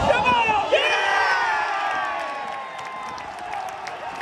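Football crowd shouting and cheering from many voices at once, loudest at the start and fading over the following seconds.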